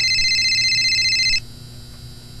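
Electronic phone ringtone, a steady high trilling tone that cuts off suddenly about a second and a half in, leaving a low hum.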